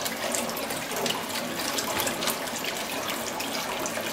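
Small electric underwater thruster running just below the surface of a water-filled sink, churning and splashing the water steadily with a fine crackle. It is running on power from a salt-water fuel cell.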